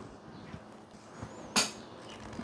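Quiet handling of a device and cable, with a couple of faint ticks and one sharp click about one and a half seconds in.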